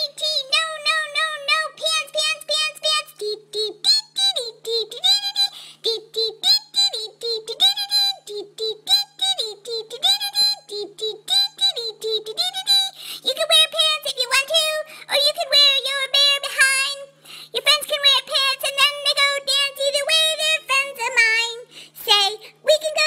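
A human voice pitched up by a talking-pet app into a high, squeaky cartoon voice, singing in a sing-song, wavering tune with held notes and pitch glides. A faint steady low hum runs beneath it.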